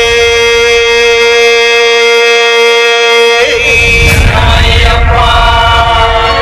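Devotional chanting: a voice holds one long steady note for about three and a half seconds, then slides briefly and carries on.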